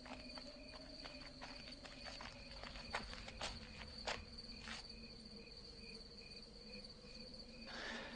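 Quiet insect chirping, cricket-like: a constant high trill with a shorter chirp pulsing about twice a second. Scattered faint clicks and a low steady hum sit underneath.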